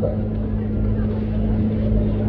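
A steady low hum holding one constant pitch, like a running motor, with no change in level.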